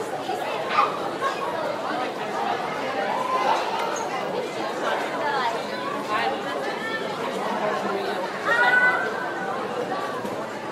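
Classroom chatter: many students talking at once in an indistinct babble, with one voice standing out louder near the end.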